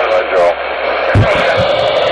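Ranger CB radio receiving a garbled, distorted voice transmission through its speaker over a steady hiss, with a few low thuds from about a second in.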